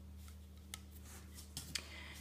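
Faint clicks of a loom hook and rubber loom bands against the plastic pegs of a Rainbow Loom as a band is looped over, one click about two-thirds of a second in and a few more close together near the end, over a low steady hum.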